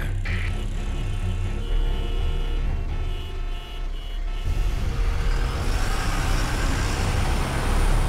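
Cartoon traffic sound effects from a jammed highway: many car engines running with a low rumble and several steady tones over them. About halfway through, a louder rushing of traffic noise comes in as the cars get moving.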